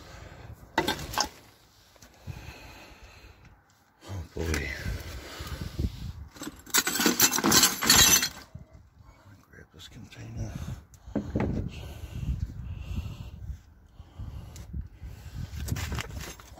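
Broken ceramic and glass shards clinking and clattering as they are handled and shifted. The busiest clatter comes from about six and a half to eight seconds in.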